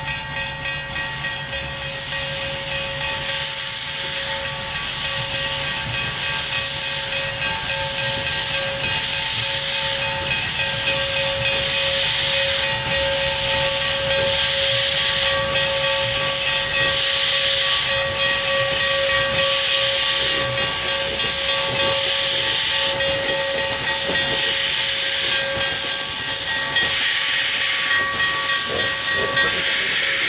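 Small 0-6-0 steam locomotive starting off slowly: loud hissing bursts of exhaust and cylinder-cock steam, about one a second, growing louder a few seconds in. A steady high tone runs underneath.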